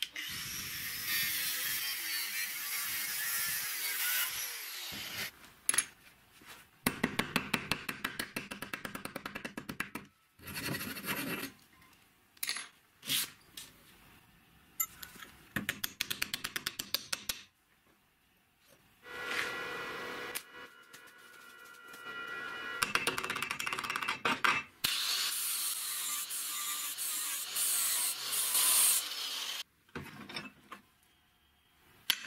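Angle grinder with a cut-off disc slicing lengthwise through a steel water pipe: bursts of harsh, hissing cutting with a high spinning whine in between, stopping and starting several times. Short stretches of rapid, rhythmic scraping strokes fall between the cuts.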